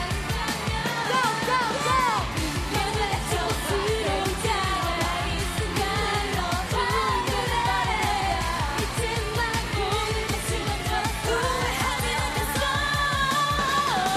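K-pop girl group song performed live through a concert sound system: female singing over a steady dance beat.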